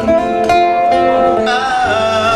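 Live rock band playing on stage: guitar chords with a male voice singing, picked up by a camcorder's built-in microphone.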